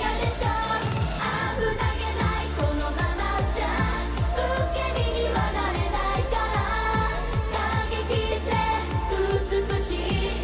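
Japanese idol pop song performed live by a girl group: female voices singing into microphones over an upbeat pop arrangement with a steady, fast drum beat and bass.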